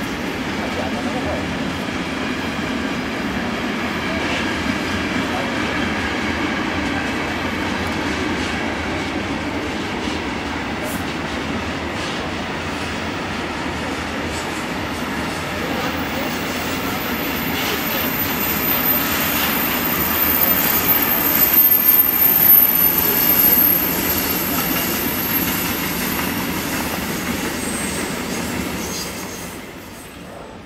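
Freight wagons rolling past on the yard tracks: a steady rumble with occasional clicks from the wheels. A thin, very high wheel squeal comes in about halfway through and is loudest a few seconds before the end.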